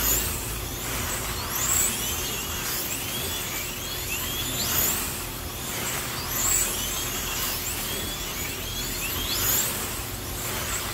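Several slot cars' small electric motors whining as they race around the track, each whine rising in pitch as a car accelerates, with several overlapping cars passing every second or two.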